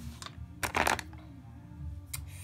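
Plastic powder-foundation jars picked up and knocking against each other and the clear plastic storage box: a short rattling clatter about half a second in, with a few light clicks around it.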